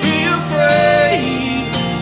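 Live acoustic folk music: a strummed acoustic guitar with a violin, cello and double bass, and a voice singing over them.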